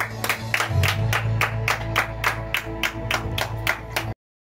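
Hands clapping steadily, about four to five claps a second, over the held closing notes of a karaoke backing track.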